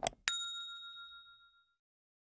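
A quick double click, then a single bright ding from a notification-bell sound effect that rings and fades away over about a second and a half.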